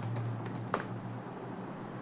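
Typing on a computer keyboard: a quick run of light keystrokes as a name is entered, the clearest about three quarters of a second in.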